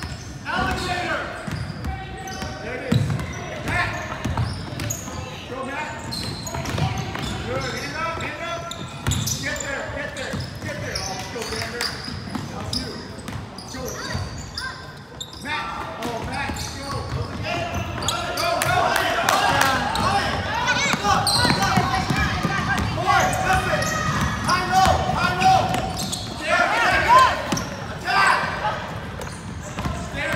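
Basketball being dribbled on a hardwood gym floor, low thuds repeating under a crowd of spectators' and players' voices echoing in the hall. The voices grow louder and busier about two-thirds of the way through.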